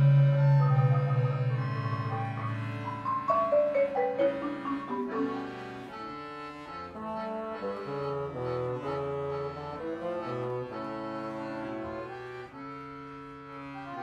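A live trio of marimba, standard bass piano accordion and bassoon playing. A loud, low held note and a rising melodic line come in the first few seconds, then the music drops to quieter sustained chords with a moving line from about five seconds in.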